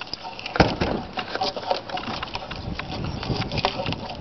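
Bark being pried and peeled off a freshly felled black ash log with a knife: irregular small crackles and snaps as the bark tears away from the wood, with one sharper crack about half a second in.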